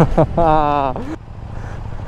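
A motorcycle engine running steadily beneath wind rush, with a drawn-out, wavering vocal exclamation over it in the first second.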